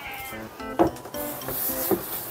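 A cloth rubbing and wiping against the inside of a plastic cat litter box. The rubbing hiss picks up about a second in, over light background music.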